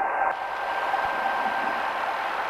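Steady cockpit noise of a light single-engine piston aircraft's engine and propeller running on the ground, heard as an even hiss through the headset intercom, with a faint steady whistle-like tone. The hiss turns brighter about a third of a second in.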